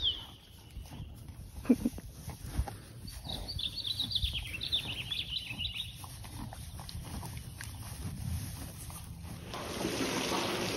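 A small songbird singing a quick run of twittering chirps a few seconds in, over a low wind rumble on the microphone. A few soft knocks and one short sharp sound about two seconds in.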